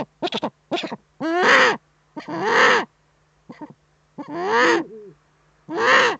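Eurasian eagle-owl calling at the nest: a few quick short calls, then drawn-out harsh calls about one a second, with one short call between them.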